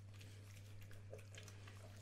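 Near silence over a steady low hum, with a few faint, soft clicks from a dog chewing a soft, freshly baked dog biscuit.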